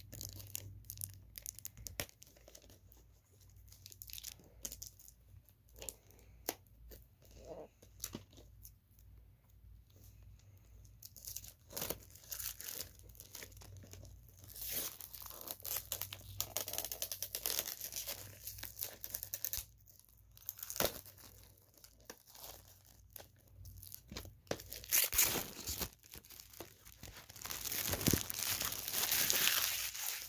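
Plastic shrink-wrap being picked at and peeled off a sealed VHS tape: irregular crinkling and tearing, in fits and starts, getting busier and louder in the second half.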